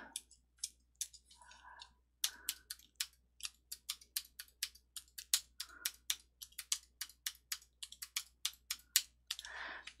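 Computer keyboard keys pressed one at a time, about three a second, while lines of code are re-indented.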